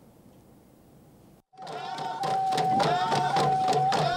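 Near silence at first, then, about a second and a half in, a traditional singsing starts suddenly: rapid drumbeats and group voices over one steady held note.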